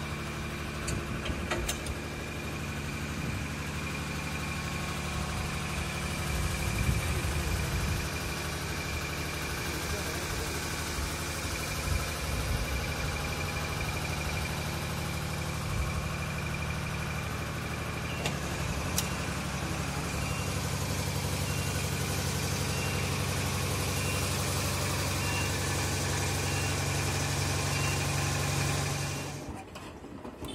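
An engine running steadily at an even speed, with a thin high whine over it.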